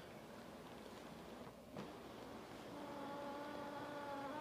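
Power recliner's electric motor running faintly as the home theater seat reclines, a steady hum that sets in about two-thirds of the way in.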